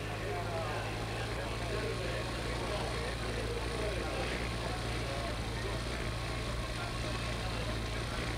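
Steady background sound of a televised road race: a drone of motor vehicles mixed with faint voices, over a constant low electrical hum.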